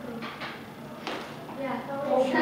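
Low classroom speech with a few short clicks or knocks in the first second, and a voice starting again near the end.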